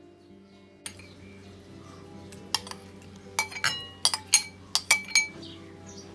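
Metal spoon clinking against ceramic dishes: about eight sharp clinks in the second half, some ringing briefly, over soft background music.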